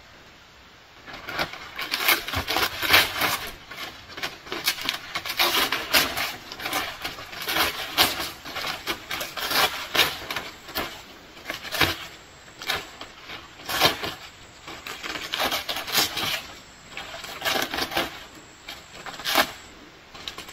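Dry leaf thatch at a roof eave rustling and crackling as it is pulled and trimmed by hand, with irregular sharp snaps every second or two.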